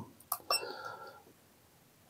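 A click from the arrow button being pressed on a FNIRSI DSO-TC3 handheld oscilloscope, followed about half a second in by a short high tone that fades out after about half a second.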